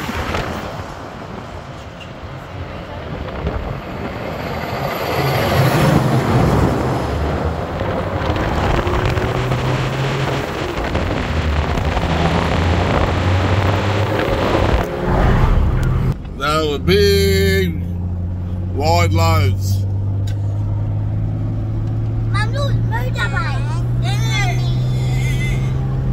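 Wind and road noise of a vehicle travelling at highway speed, with oversize trucks coming the other way. From about two-thirds of the way in, a steady engine hum fills the cabin, and a small child's high squeals and babble sound over it.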